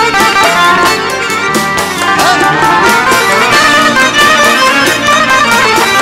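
Live band playing an instrumental passage with no singing: a keyboard melody over a steady drum-kit and frame-drum beat, with electric guitar.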